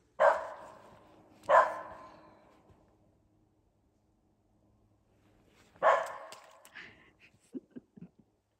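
A dog barking three times: twice in the first couple of seconds, then once more about six seconds in, each bark trailing off over about a second.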